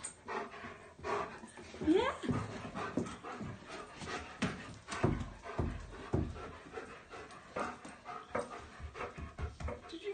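German Shepherd panting fast and hard in excitement, with a short rising whine about two seconds in.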